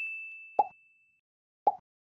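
Subscribe-animation sound effects: a high bell-like ding fading out, then two short pops about a second apart as an animated cursor clicks the subscribe and like buttons.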